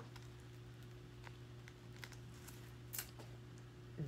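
Faint handling sounds of a cloth dust bag being opened and a small leather bag charm with a metal clasp drawn out of it: a few light clicks, the loudest about three seconds in, over a steady faint hum.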